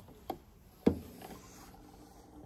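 Mechanical clicks from the metal control levers of an antique Swiss cylinder music box being moved by hand: three short clicks, the loudest about a second in.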